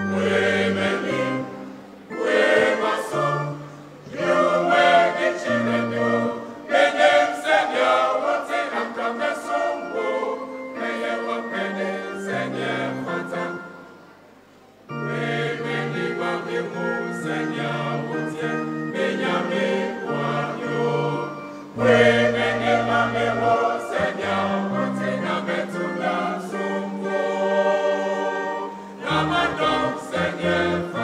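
Mixed church choir singing in several voice parts, phrase after phrase, with a short lull about halfway through before the singing picks up again.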